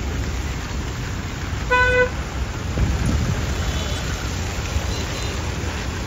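Road traffic on a wet street: a steady wash of engines and tyre noise, with one short vehicle horn toot a little under two seconds in, the loudest sound, and a couple of fainter high beeps later on.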